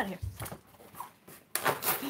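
A short, scraping rustle of stiff cardboard being handled and rubbed, starting about a second and a half in.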